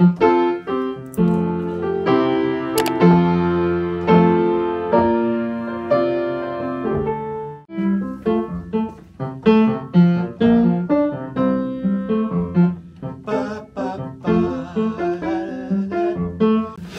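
Upright piano being played. Full chords are held and left to ring for the first half. After a short gap about eight seconds in, the playing turns to shorter, more rhythmic chords.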